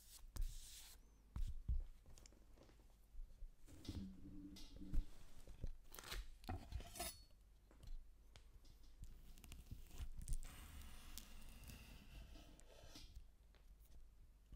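Close-miked sounds of deer heart being handled and cut on a wooden cutting board: scattered taps and clicks as the slices are set down and moved, then a chef's knife sawing through the meat for a couple of seconds near the end.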